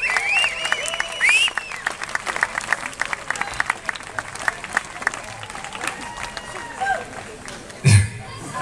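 Audience applauding, with a few whistles in the first second or so; the clapping thins out toward the end.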